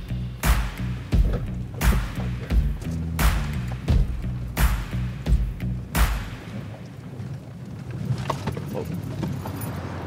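Background music with a steady drum beat and a bass line, ending about six seconds in. After that, a quieter low rumble of a vehicle driving remains.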